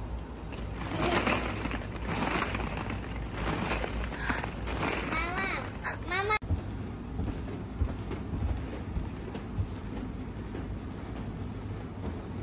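Plastic ball-pit balls rustling and clattering as children shift among them, with a child's short high vocal sounds near the middle. It breaks off suddenly, leaving a steady low hum with a few faint thumps.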